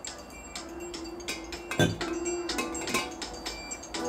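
Music with a light ticking beat and a held tone, playing from a smartphone inside a glass smartphone amplifier. A single knock about two seconds in as the phone is set down in the glass.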